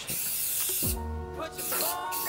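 Aerosol spray-paint can hissing in two short bursts as paint is sprayed onto a concrete wall, over background music with a deep falling bass note.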